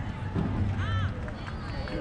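Indistinct voices of people talking, with a short rising-and-falling high call about a second in.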